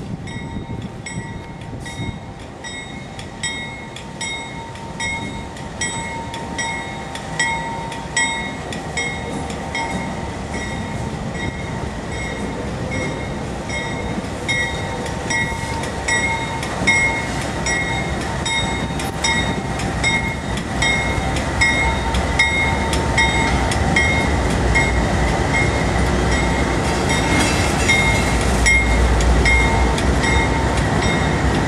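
GE Dash 9 diesel locomotives heading a coal train approach, their low engine rumble growing louder through the second half. A bell rings at an even pace throughout.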